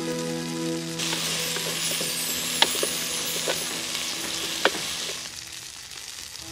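Food sizzling in a pot over a wood fire while a ladle stirs it, knocking sharply against the pot three times. Soft music fades out about a second in.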